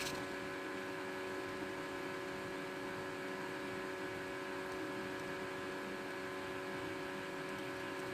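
Steady background hum of a running electrical appliance or motor, with a few fixed tones held evenly throughout and nothing else happening.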